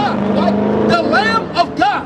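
A motor vehicle passing on the street, its engine a steady low hum that slowly drops in pitch and fades about a second and a half in, with snatches of voice over it.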